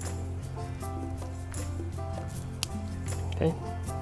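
Background music with held notes. A sharp click about two and a half seconds in, with a few fainter ones, from small plastic figure parts being handled and fitted together.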